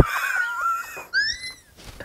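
A woman laughing in two high-pitched squeals, the second rising and then falling a little after a second in.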